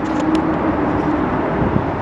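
Steady traffic noise with a faint low engine hum, and a couple of faint clicks near the start.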